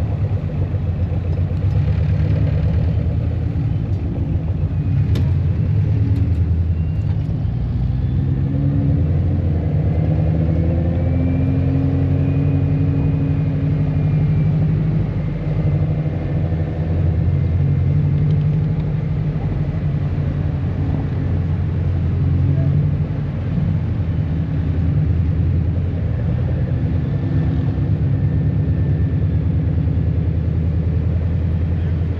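A car driving, its engine running with road noise and the engine note rising and falling with speed.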